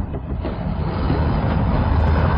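A sound effect in an anime soundtrack: a low, noisy rumble without speech that slowly swells in loudness.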